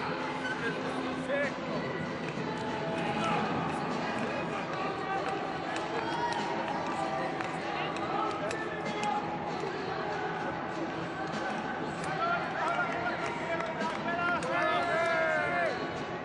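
Indistinct voices of spectators in a speed-skating arena, a steady background of talk and calling, with a few rising-and-falling shouts near the end.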